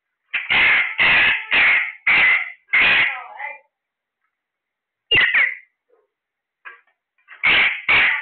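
A caged parakeet calling: a run of five loud, harsh screeches about half a second apart, then a short call a couple of seconds later and two more screeches near the end.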